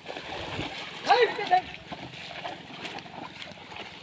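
Wet mud and water sloshing and splashing as an elephant drags a chained log through waterlogged ground, with a person's brief loud call about a second in.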